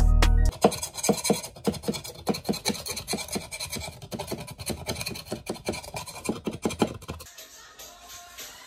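Music that cuts off about half a second in, followed by a metal putty knife scraping dried debris off a wooden floor along the wall edge in quick, irregular strokes, several a second. Near the end the scraping gives way to a softer, steady sponge scrubbing.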